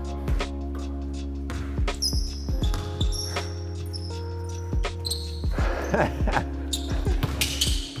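A basketball bouncing on a hardwood gym floor in a string of irregular thuds as it is dribbled in one-on-one play, over steady background music.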